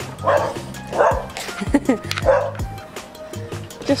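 Cavapoo dog barking at seagulls, about four barks in the first half, over background music with a steady beat.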